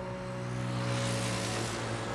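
A whoosh of noise swells up and fades away over a low, sustained musical drone.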